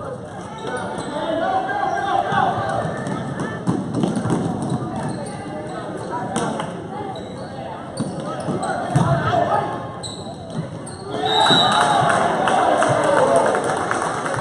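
A basketball bouncing on a gym floor during play, with spectators' voices and shouts echoing around the hall. The voices swell louder about three-quarters of the way through.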